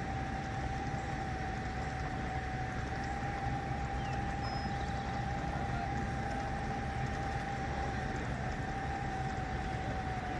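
Steady low rumble of idling vehicle engines with a constant high-pitched whine over it.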